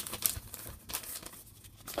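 Paper instruction sheet rustling and crinkling as it is handled, a few short crackles in the first second that die away to faint room noise.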